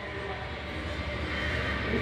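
Steady low rumble of background room noise with a faint hum, no distinct event. A shouted word begins right at the end.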